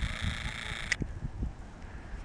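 Irregular low rumble of wind buffeting the camera microphone outdoors, with a faint steady hiss that cuts off with a click about a second in.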